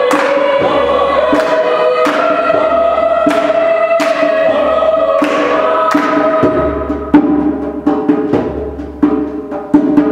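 Mixed choir singing sustained chords, with hand claps marking the beat. About six and a half seconds in the voices drop back and quicker claps and hand-drum strokes come to the fore.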